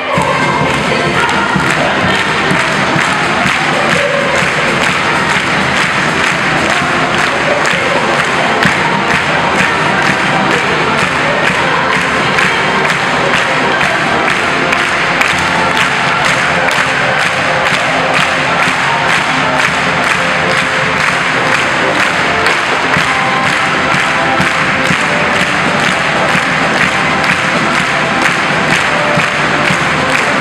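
Symphony orchestra playing a lively piece in a large concert hall, with a steady beat of about two to three strokes a second and the audience clapping along in time.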